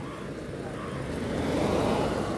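A car driving up and passing close by on the road, its engine and tyre noise growing steadily louder to a peak near the end.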